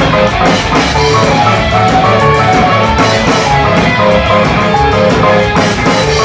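Live rock band playing loudly: electric guitar over a drum kit, the drums beating a steady rhythm.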